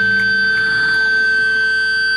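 Live band music: a saxophone and electric guitar hold a sustained droning chord, with steady high tones and the lower notes dying away about half a second in.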